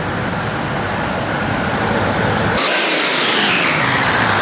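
A steady rumbling noise, then about two and a half seconds in the rumble cuts out and a falling whoosh follows: a video transition sound effect.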